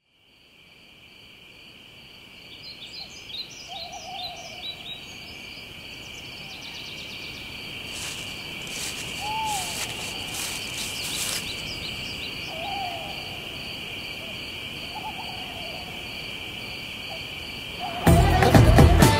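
Forest ambience fading in: a steady, high insect drone with bird calls over it. Quick high chirps come in the first seconds, a run of brief rapid pulses follows about halfway through, and a lower call repeats four or five times.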